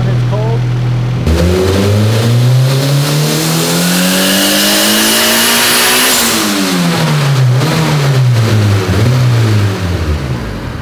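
Turbocharged Honda B18 non-VTEC four-cylinder on a hub dyno making a full-throttle pull. It idles for about a second, then the revs climb steadily for about five seconds toward roughly 7,300 rpm with a high whine rising with them, then fall back to idle over the last few seconds.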